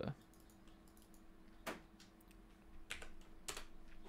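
A few separate key clicks from a computer keyboard, three of them sharper than the rest, over a faint steady hum.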